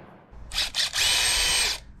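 Cordless drill motor whining as the trigger is pulled: a few short blips about half a second in, then a steady run of under a second that stops abruptly.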